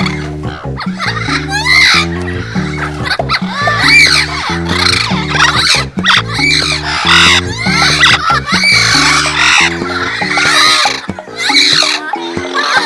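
Background music with a steady, stepping bass line, with repeated squawking calls of amazon parrots rising and falling over it.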